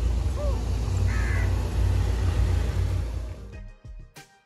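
Low, steady rumble of a car at night, with two short rising-and-falling animal cries in the first second and a half. The rumble fades out near the end as faint music comes in.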